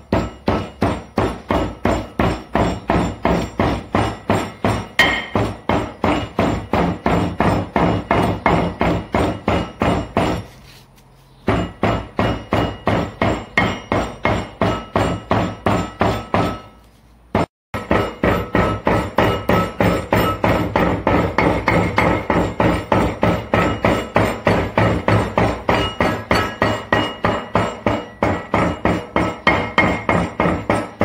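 A hand-held stone repeatedly pounding dried salted beef against a porous stone slab, crushing it into shredded machaca. The blows come steadily at about three a second, with two brief pauses near the middle.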